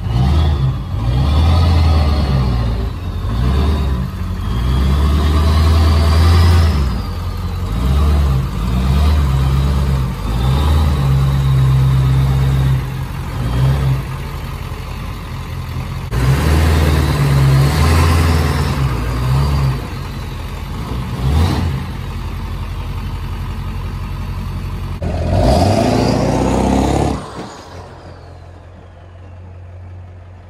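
Turbodiesel pickup (7.3 Power Stroke V8) on a 5-inch straight pipe with no exhaust tip, revved several times in a row: a deep exhaust note with a high turbo whistle rising and falling over each rev. It drops much quieter near the end.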